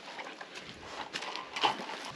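A wooden stick stirring salt into vinegar in a plastic bucket, giving irregular gritty scrapes and light knocks against the bucket, the strongest about one and a half seconds in.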